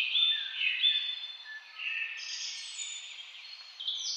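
Birdsong: several birds chirping and whistling over one another, all high-pitched.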